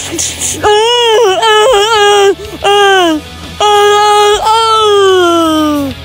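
A high-pitched voice wailing in a run of wordless cries, the last one long and sliding down in pitch.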